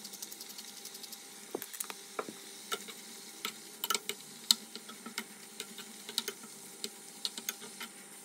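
Chicken pieces frying in a pan of hot buttery sauce: a steady sizzle with irregular sharp pops and crackles, and a metal spoon stirring and now and then tapping against the pan.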